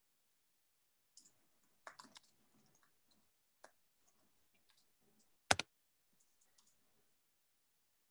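Scattered faint clicks and taps at a computer desk, heard through an open video-call microphone. The loudest is a sharp double click about five and a half seconds in.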